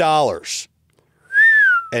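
A person whistles once, a short clear note that rises slightly and then glides down: an impressed whistle at the mention of raising $300 million.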